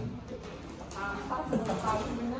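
A young man's wordless vocalizing, a cry or laugh with a wavering pitch that starts about a second in.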